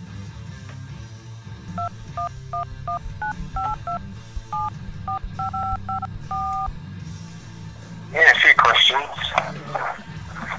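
Touch-tone telephone keypad dialing: a quick run of paired beeps for about five seconds, with a short pause midway and a longer final tone. Voices and laughter break in near the end.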